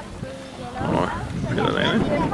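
People talking, with several voices mixed together, starting about a second in.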